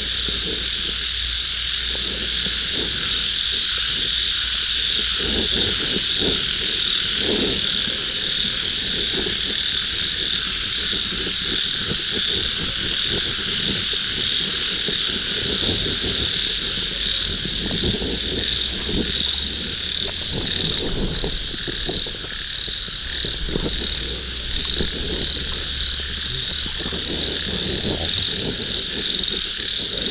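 Dense night chorus of frogs calling from a waterlogged ditch, mixed with insects: a steady high-pitched buzz with irregular lower croaks beneath it.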